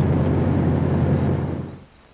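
Single-engine de Havilland bush plane's radial piston engine droning steadily, heard inside the cabin in flight, then fading out over the last half second.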